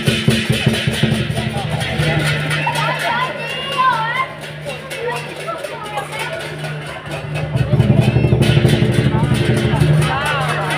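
Lion dance percussion, a large drum with clashing cymbals, playing a fast, loud beat. It stops about two seconds in, leaving crowd voices, and starts again loudly about seven and a half seconds in.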